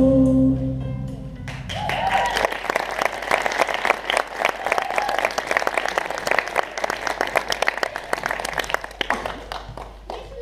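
The final held chord of a song dies away about two seconds in, and an audience applauds, with a few voices calling out over the clapping.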